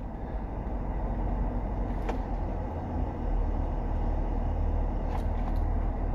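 Steady low rumble of a car's engine and road noise heard from inside the cabin, with two faint clicks.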